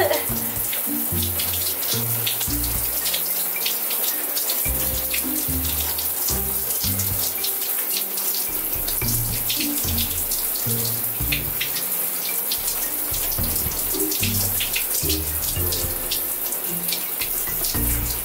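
Shower water running and splashing as hands scrub a wet face and head, under background music with a low bass line.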